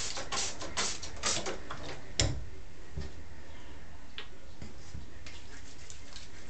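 Hand-held spray bottle misting water onto hair: several quick hissing sprays in the first second and a half, then a single sharp knock about two seconds in, followed by a few faint clicks.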